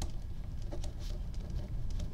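Pen writing on graph paper: a run of short, faint scratching strokes as words are written out.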